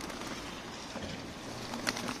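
Feral pigeons flapping their wings as they take off and land around scattered bread, over steady outdoor background noise, with one sharp clap near the end.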